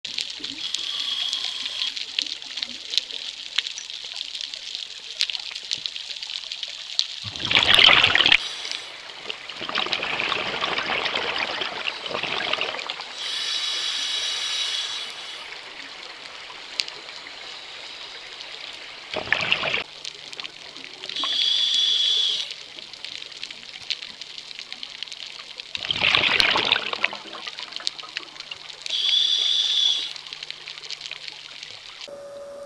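Scuba diver breathing through a regulator underwater. Rushes of exhaled bubbles alternate with the regulator's hissing, slightly whistling inhale, a breath cycle every six to eight seconds, over a constant fine underwater crackle.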